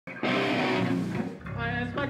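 Electric guitar through an amplifier, held notes ringing out live, with a brief dip about a second and a half in.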